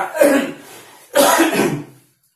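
A man coughing twice, the second cough about a second after the first.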